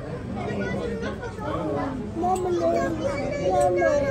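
People talking and chattering, among them a high-pitched voice, most likely a child's; the words are not made out.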